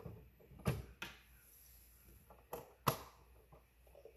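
Handling knocks and clicks as a Dymo DiscPainter disc printer is unplugged and tipped over onto its side on a wooden table: a few sharp knocks, the loudest about three seconds in, then small ticks.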